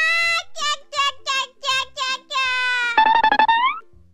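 High-pitched cartoon laughter voiced by a performer, a run of short 'quiá, quiá, quiá' bursts. It ends with a longer laugh that rises in pitch and stops shortly before the end. Background music plays underneath.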